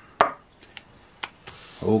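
One sharp knock and two lighter taps on a wooden tabletop, then a brief papery slide, as a scratched lottery ticket is set aside with the scratching coin still in hand.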